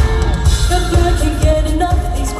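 Live pop band music with a lead vocal over electric guitar, drums and a strong bass beat, played loud through a concert sound system.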